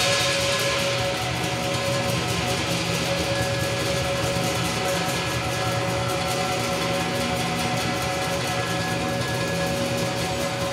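Lion dance percussion band of Chinese drum, cymbals and gong playing continuously: dense rapid strokes under steady ringing metallic tones.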